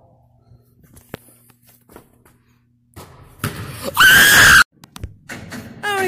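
A teenage boy's loud, high-pitched scream of excitement lasting about half a second, about four seconds in, starting from a rougher shout just before it: a celebration as the last basketball shot goes in. Before it, quiet with one faint sharp knock about a second in.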